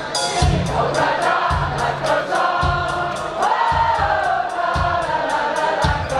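Live rock band playing, with electric guitars, bass, drums and keyboards, over a steady kick-drum beat about once a second with cymbal ticks between. Many voices sing the tune together, as when an audience joins in.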